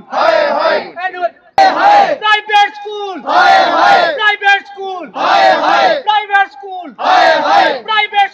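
Crowd of protesters shouting a slogan in unison, a short chant repeating about every second and a half, with single voices leading between the massed shouts.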